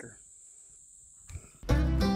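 A steady, high-pitched chirring of crickets or other insects over quiet outdoor ambience. About a second and a half in, loud background music with a deep bass line starts.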